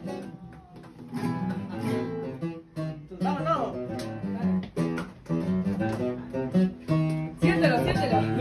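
Two acoustic guitars playing together, strummed chords under plucked melody notes, coming in about a second in and getting louder near the end.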